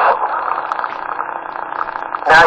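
Static hiss from a CB radio's speaker between transmissions: a steady rushing noise with a faint hum underneath.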